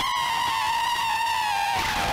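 Harsh-noise feedback from a contact microphone sealed inside a ball gag, fed through effects pedals and an amplifier. It is one sustained, slightly bending tone with overtones, and it breaks off shortly before the end.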